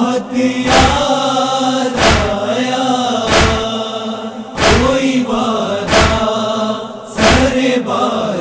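Male voices chanting a nauha, a Shia mourning lament, in long drawn-out sung lines. A sharp beat keeps time about every second and a quarter, six strikes in all, the rhythm of matam chest-beating.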